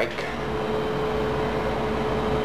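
Steady machine-room hum of idle elevator equipment, with a constant mid-pitched tone over a low drone; the traction machine is stopped.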